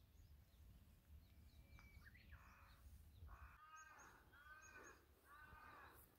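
Faint outdoor near-quiet with a bird calling three times, each call about half a second long and about a second apart, in the second half.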